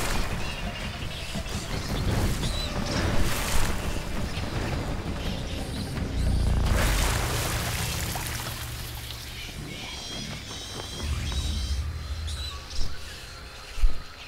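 Dramatic background music over several heavy water splashes as a freshwater crocodile lunges at fruit bats skimming the river surface.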